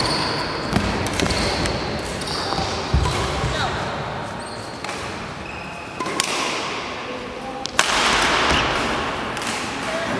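Badminton rally in a large echoing sports hall: sharp racket-on-shuttlecock hits a second or more apart, over background chatter that gets louder near the end.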